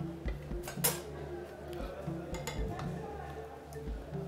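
A metal spoon clinking and scraping against a ceramic serving bowl a few times while scooping stiff maize porridge (pap), over soft background music.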